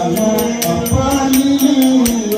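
Nanthuni pattu, a ritual song. A voice holds long, slowly bending notes over an even, rapid rhythm of struck strokes, about five a second.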